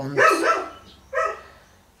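A dog barking twice: one bark just after the start and a shorter one about a second later.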